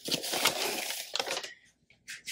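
Rustling and rubbing of a polyester drawstring bag and its cords being handled and smoothed out by hand, lasting about a second and a half before it stops.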